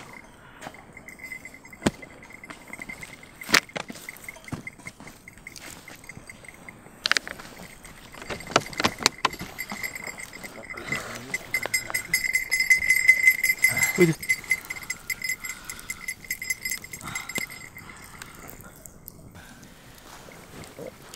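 Scattered sharp pops and crackles from a wood campfire, with rustling of a heavy sheepskin coat as a man lies down in it on the grass. A steady high-pitched tone runs underneath, loudest about two thirds of the way through.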